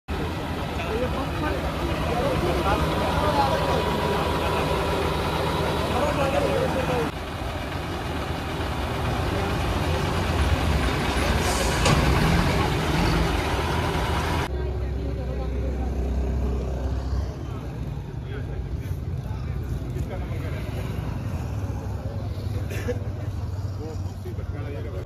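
A vehicle engine running steadily, with people talking over it. The sound changes abruptly twice, about seven and fourteen seconds in.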